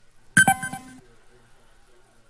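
A short, loud ding-like tone with a few pitches sounding together, starting about half a second in, lasting about half a second and cut off abruptly.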